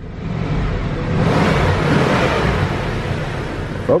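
Buick Roadmaster's 5.7-litre LT1 V8 heard from inside the cabin, speeding up over the first second and then held steady at raised revs.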